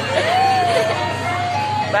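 Coin-operated kiddie ride playing its electronic jingle tune, a simple melody of held notes, over voices in the background.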